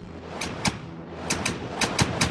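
Sound effect for an animated logo intro: a rushing noise that grows louder over a steady low hum, broken by sharp crack-like hits that come more often toward the end.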